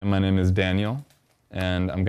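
A man speaking, with a half-second pause about a second in.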